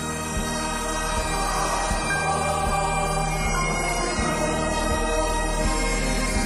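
Great Highland bagpipe playing a melody over its steady drones, with an orchestra's strings, cellos among them, bowing underneath.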